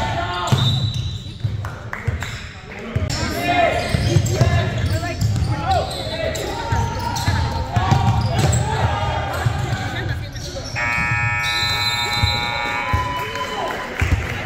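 Basketball dribbling on a gym floor, with players' voices echoing in a large hall. About eleven seconds in, a steady electronic buzzer sounds for about two seconds: the scoreboard horn ending the half.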